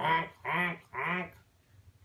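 A man imitating a goose's honk with his voice, three short nasal honks in quick succession.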